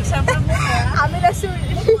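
Women's voices and laughter over the steady low rumble of a vehicle's engine.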